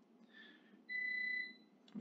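A single short, steady high-pitched tone, like a beep, lasting about half a second near the middle.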